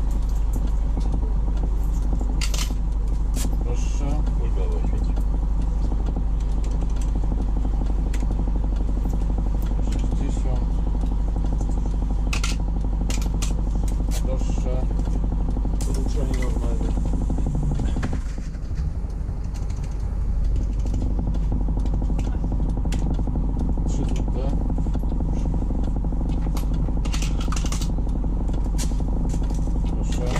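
DAB articulated bus's diesel engine idling steadily, heard from the driver's cab while the bus stands still, with scattered light clicks. The sound drops a little for a moment just after the middle.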